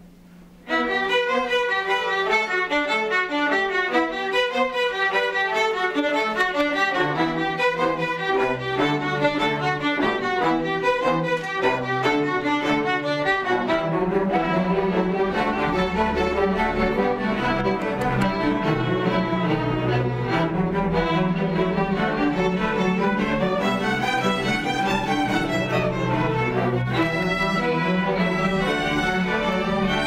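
Student string orchestra playing, starting together suddenly less than a second in; the lower strings join about halfway, and the sound fills out into a fuller, deeper texture.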